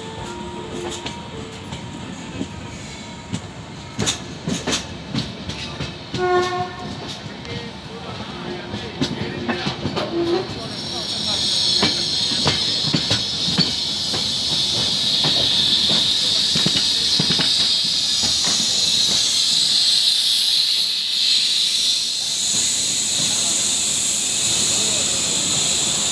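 LHB passenger coaches running slowly over rail joints and points with sharp clacks, and short horn tones in the first ten seconds. From about 11 s in, a steady high-pitched brake squeal and hiss takes over as the train slows into the platform.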